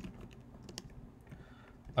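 Typing on a computer keyboard: scattered, irregular keystroke clicks, with a sharper click at the very end.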